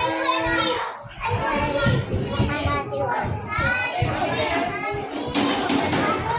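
Many children's voices chattering and calling out over one another, the busy hubbub of kids at play. A short burst of noise near the end.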